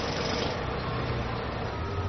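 Caterpillar skid-steer loader fitted with a hydraulic breaker, running steadily under load as it chips concrete off a building's foundation. Its engine hum sits under a continuous rough clatter.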